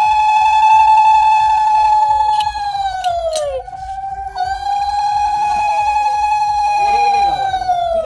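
Conch shell (shankha) blown in two long blasts during a household puja. Each blast holds one steady note and sags in pitch as it dies away, and a few sharp clinks fall between them.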